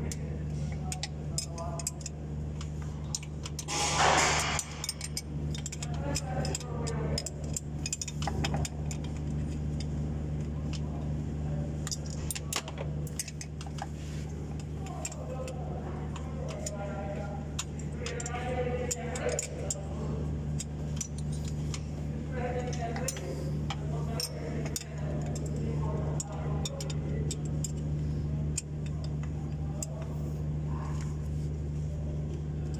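Scattered metallic clinks and light knocks of hand tools working on the engine's front end behind the cooling fan, over a steady low hum. A short loud hiss comes about four seconds in.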